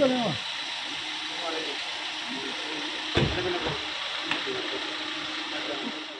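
Faint men's voices over a steady hiss of street noise, with a dull thump about three seconds in and a lighter click about a second later.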